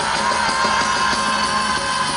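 Live rock band playing, recorded from the audience: guitars, bass and drums, with one long held high note running through.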